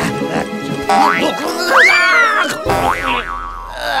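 Cartoon background music with springy 'boing' sound effects: quick rising sweeps, and a loud tone about two seconds in that rises and then falls, followed by a low rumble. A brief laugh comes near the end.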